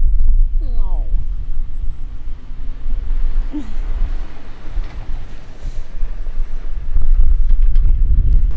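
Wind buffeting the microphone, a heavy, uneven low rumble, with a brief voice about a second in.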